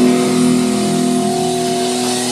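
Live melodic hardcore band: distorted electric guitars and bass holding a ringing chord, steady and loud, with one of the low notes dropping out a little past the middle.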